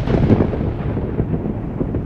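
A deep, rolling rumble slowly dying away after a crash, used as a dramatic sound effect under a title card.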